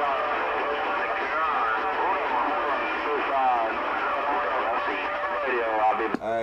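CB radio speaker playing other stations' voices on a busy channel, several talking over one another, garbled and mixed with static, with the thin, narrow sound of radio audio.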